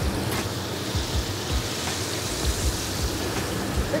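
Beer-battered fillets sizzling in a commercial deep fryer's hot oil, the hiss swelling just after they drop in.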